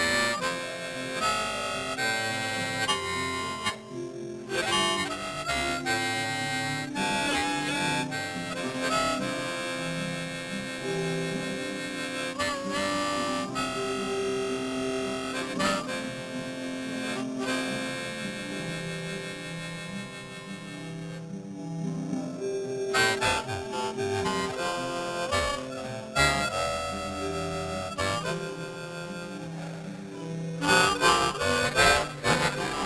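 Solo harmonica playing a slow tune of long held notes.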